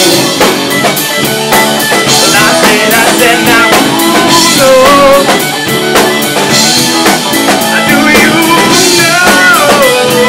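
Live rock band playing an instrumental passage: a drum kit keeps a steady beat under electric guitars, with a violin playing a sustained melody that slides in pitch from about four seconds in.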